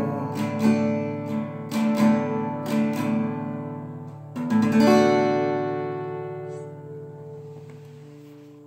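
Acoustic guitar strummed in a run of chords to close the song, then a final chord struck about four and a half seconds in and left to ring out, fading away.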